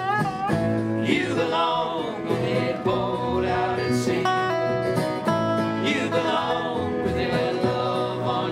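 Acoustic country-style music: strummed acoustic guitars with several voices singing together.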